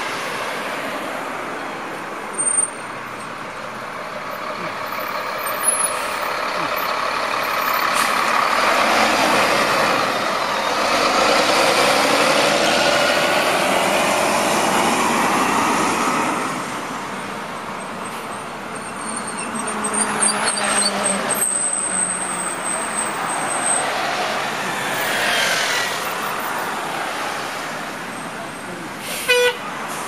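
City transit buses pulling out of a station and driving past. Their engine and road noise swells as each one accelerates by, then fades. A short, sharp pitched sound comes near the end.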